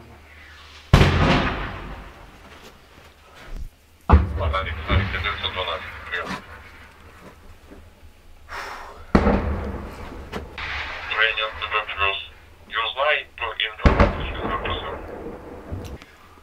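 Four heavy shell explosions from mortar and tank fire, each a sudden boom dying away in a rumble, about a second in, then near 4, 9 and 14 seconds, heard from inside a shelter. Muffled voices are heard between the blasts.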